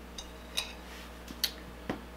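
A handful of short, light clicks and taps spread over about two seconds, over a faint steady hum.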